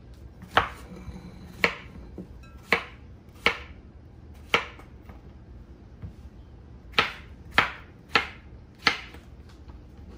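Knife slicing a zucchini into rounds on a wooden cutting board: about nine sharp chops at uneven spacing, with a pause of about two seconds in the middle.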